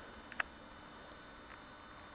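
Faint steady background hiss with one short sharp click about half a second in and a softer tick later.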